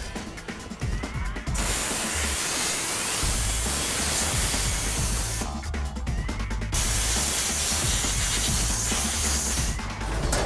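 Compressed-air blow gun blowing rinse water off handgun parts in a wire basket over a steel sink. Two long, steady hissing blasts, about four seconds and three seconds, with a brief break between.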